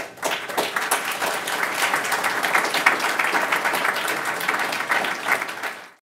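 Audience applauding: many hands clapping steadily for several seconds, then cutting off suddenly near the end.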